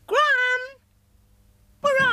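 Two high-pitched, meow-like calls: the first rises and holds for about half a second, the second starts near the end and slides down in pitch.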